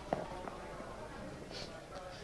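A single sharp knock just after the start, then quiet hall ambience with a faint murmur.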